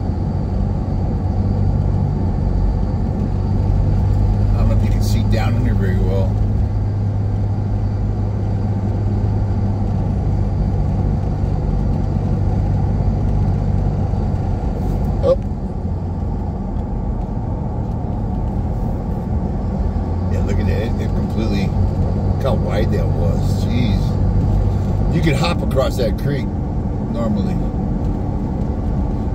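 Car engine and road noise heard from inside the cabin while driving: a steady low drone. About halfway through there is a single sharp click, and the drone drops a little and changes note.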